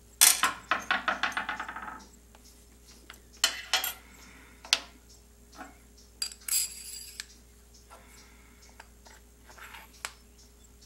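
Small steel parts clinking on a sheet-steel machine table. About a quarter-second in, a small metal piece drops and rattles on the table with quick taps that die away over under two seconds. Scattered single clinks follow as metal parts are handled and set down.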